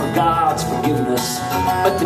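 Live folk song: acoustic guitar and electric guitar playing together, with a man's voice singing between lines of the verse.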